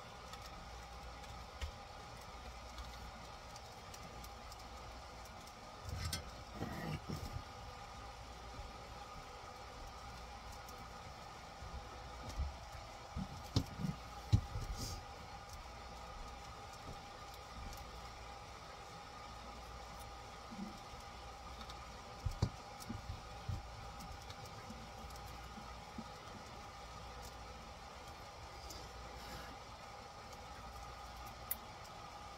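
Quiet handling noise of a soldering iron and hand tools working on an RC car's motor leads: scattered small knocks and clicks in a few clusters, the loudest a little before the middle, over a steady low hum with faint steady tones.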